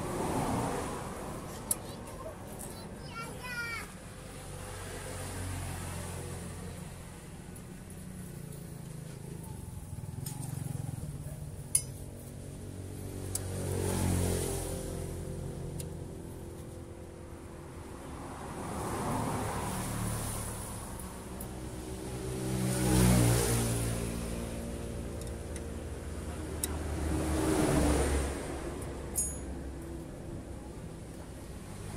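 Road vehicles passing by in slow swells that rise and fall, over a steady background rumble. A few sharp metallic clinks of a small wrench on a truck's grease nipple.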